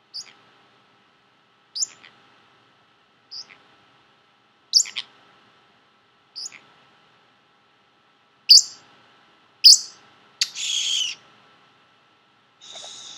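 Pacific parrotlet giving short, high chirps about every second and a half, getting louder, then a longer, rougher call near the end.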